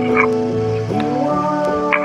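Electronic keyboard playing held, organ-like chords that change to new notes about a second in, with a voice sliding up into a sung note at the change.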